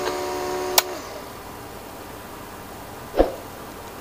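Small 12-volt DC cooling fans and a small DC motor, wired as the load of an IGBT, running with a steady whir. They have kept running because the IGBT is shorted and will not switch off from its gate. A sharp click comes just under a second in, then the whir winds down and stops, and a soft knock follows near the end.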